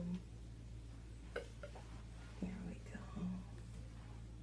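A woman's soft, wordless murmurs and whispers, brief and scattered, with a faint click about a second and a half in, over a steady low hum.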